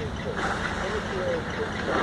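A truck engine idling steadily, with muffled voices talking close by.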